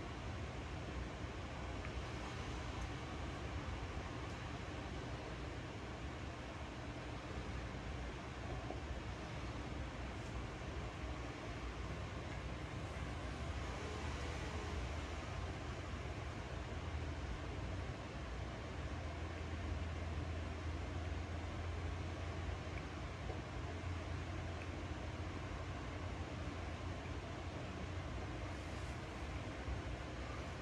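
Steady background hiss with a low hum that swells slightly past the middle, and no clicks or other distinct events.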